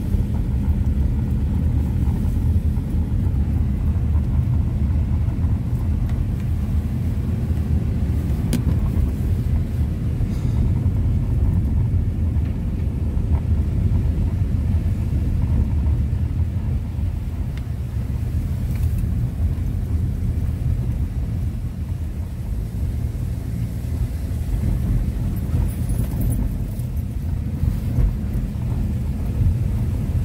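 Steady low rumble of a Honda CR-V's tyres and suspension on a wet, bumpy gravel road, heard from inside the cabin.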